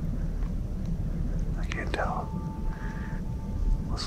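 A man whispering briefly around the middle, over a steady low rumble, with a thin steady tone held through the second half.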